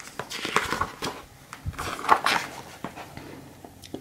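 A picture-book page being turned by hand: a run of short paper rustles and handling noises, fading out over the last second or so.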